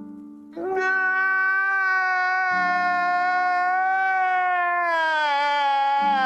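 One long, drawn-out wailing note held for about five seconds and sagging in pitch near the end, over a steady low drone: an exaggerated crying sound from a meme clip.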